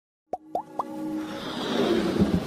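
Synthesized intro sound effects: three short rising bloops about a quarter second apart, then a hissing swell that grows steadily louder.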